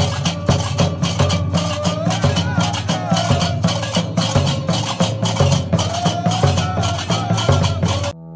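Gnawa ensemble: qraqeb iron castanets clattering in a fast, steady rhythm over large double-headed drums, with voices singing along.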